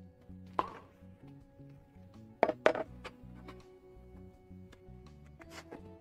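Titanium strips being handled and set down on a wooden workbench: four sharp knocks, the two loudest close together about two and a half seconds in. Background music plays under them.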